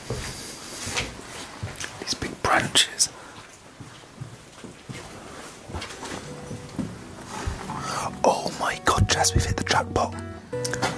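Footsteps crunching and scuffing over a rubble- and leaf-strewn floor, with a brief hushed whisper. Background music with steady held notes comes in during the second half.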